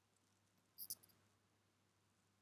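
Near silence: faint room tone with a steady low hum, broken by one short, faint double click a little under a second in.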